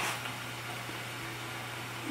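Quiet steady hiss with a low, even hum: room tone. No distinct scooping or pouring sound stands out.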